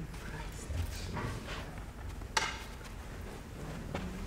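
Movement sounds in a small room, with faint low voices and one sharp click about two and a half seconds in.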